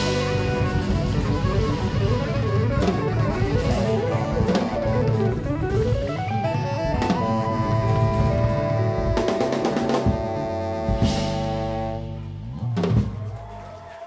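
Jazz-fusion quartet of saxophone, electric guitar, bass guitar and drum kit playing live. Busy drums and bass run under a line that slides up into a long held high note about seven seconds in. A few final hits follow as the tune ends, and the sound dies away at the close.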